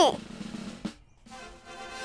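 A drum roll sound effect comes in after a brief silence, about a second and a half in, building toward a reveal. Before it come the tail of a child's counted 'three' and a single click.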